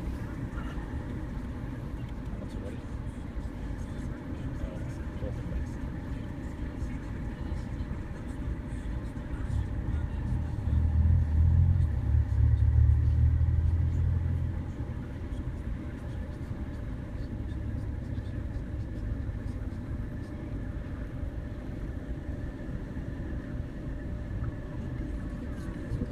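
Steady low outdoor rumble, swelling louder for a few seconds about ten seconds in before settling back.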